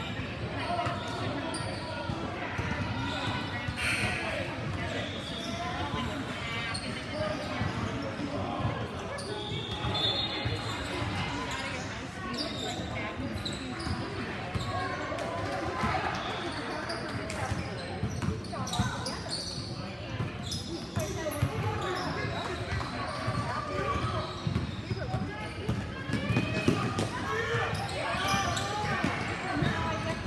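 A basketball being dribbled and bouncing on a gym court during play, repeated thuds echoing in a large hall, with indistinct calls from players and onlookers throughout.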